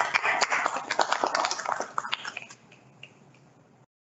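A small group applauding by hand, the clapping thinning out and fading away about two and a half seconds in.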